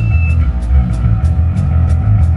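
Rock band playing live in a rehearsal studio, in a sparse passage: bass guitar and drums carry it, with hi-hat ticks about three times a second over the low bass notes.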